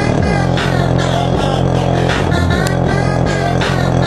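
Bass-heavy music with singing, played loud through a 12-inch paper-cone subwoofer whose cone is pumping hard. A deep, steady bass line shifts note about every half second.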